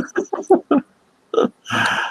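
A man laughing in a quick run of short chuckles, then a breathy exhale or sigh near the end.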